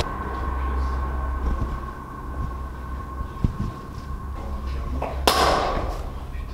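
Steady low hum with a faint high whine, then about five seconds in a sudden loud burst of noise lasting about half a second: a companion's scare that startles the explorer.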